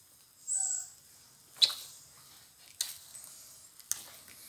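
A Pomeranian gives one brief, high whine about half a second in, followed by a few sharp wet smacking clicks as it licks and kisses a face.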